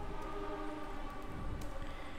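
A faint steady hum, with a few faint clicks.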